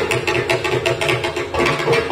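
Carnatic classical music from a flute-led concert ensemble: rapid hand-drum strokes over steady held pitches.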